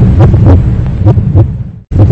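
Loud heartbeat sound effect: paired thuds about once a second over a heavy low drone, fading and cutting out for an instant just before the end.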